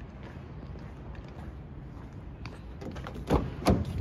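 Two dull thumps near the end, less than half a second apart, over a steady low room hum.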